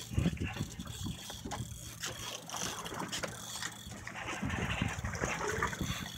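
Fishing reel clicking in quick, uneven runs of ratchet-like ticks while line is worked against a heavy fish on a bent rod.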